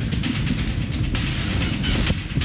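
Low road rumble inside a car driving down a potholed, cracked road, with music playing underneath.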